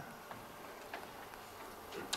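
Quiet room tone in a pause between speech, with a few faint ticks.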